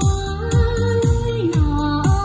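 Music with a steady beat, a deep kick about twice a second under a held melody, played through a pair of BMB 210 karaoke speakers.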